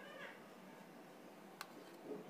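Near silence, broken by one sharp click of a knife against a steel plate about one and a half seconds in, and a faint, brief high-pitched call at the very start.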